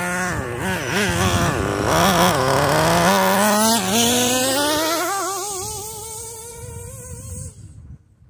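Nitro RC truck's small glow-fuel engine revving in quick throttle blips, its pitch wobbling up and down, then accelerating away with the pitch climbing steadily as it fades, dropping out just before the end.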